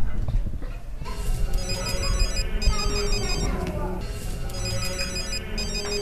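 A mobile phone ringtone plays: a short electronic melody that repeats, starting about a second in.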